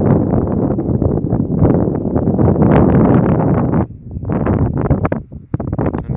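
Wind blowing across the camera microphone, a loud, gusty rush that eases for a moment about four seconds in and then returns in choppier gusts.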